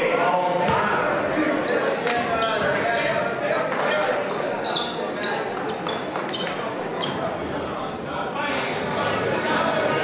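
A basketball bouncing on a hardwood court, roughly once a second, under the voices of players and spectators, all echoing in a large gym.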